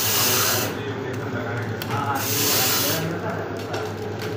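Small vertical pouch-packing machine with a cup-plate filler running: a steady hum under a hiss that swells and fades about every two seconds.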